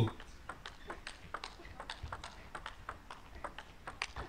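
Table tennis rally: the plastic ball ticking off the table and the players' bats in quick alternation, about three hits a second, faint on the match broadcast's sound.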